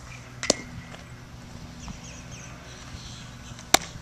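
A pitched baseball pops into the catcher's leather mitt about half a second in. Near the end a second sharp smack, slightly louder, comes as the catcher's return throw lands in the pitcher's glove.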